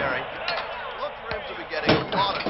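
A few knocks and clatters from inside a wooden kitchen cabinet under a sink, the loudest just before the end.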